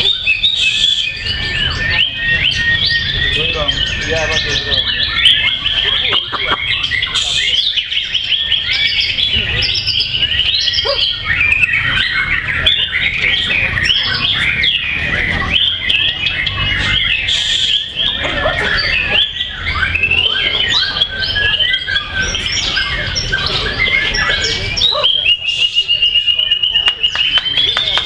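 White-rumped shamas (murai batu) singing in competition: a continuous, rapid stream of varied whistles, trills and chattering phrases, several caged birds overlapping, over a low background murmur.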